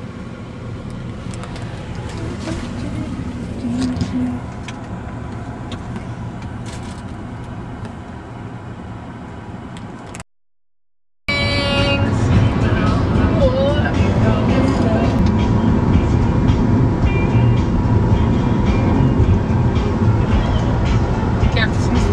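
Road noise inside a moving car. About ten seconds in it cuts out for a second and comes back louder, with music playing over the road noise.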